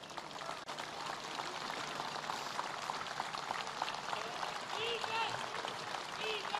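Large outdoor crowd applauding steadily, a dense patter of many hands clapping.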